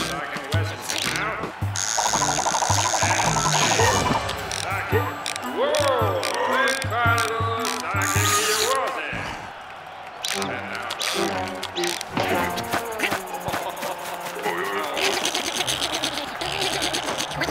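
Cartoon soundtrack: background music with a steady beat, under wordless character vocal noises and comic sound effects, with a buzzing effect about two seconds in.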